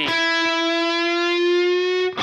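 Electric guitar playing one sustained note at the ninth fret of the G string, slowly bent up in pitch.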